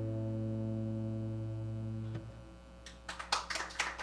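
A closing chord on guitar and synthesizer is held steady, then stops about two seconds in. Scattered applause from a small audience starts near the end as the piece finishes.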